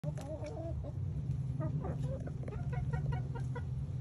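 Hens clucking as they feed. A short warbling call comes near the start, and about halfway in there is a quick run of short, evenly spaced clucks, all over a steady low hum.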